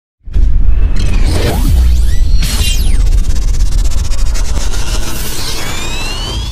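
Cinematic intro sound effects: a heavy deep rumble under whooshes, with a steep falling sweep about two and a half seconds in and rising tones near the end.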